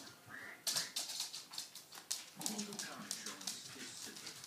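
Small dogs playing on a hardwood floor, their claws clicking and scrabbling in quick runs, with a few short whimpers.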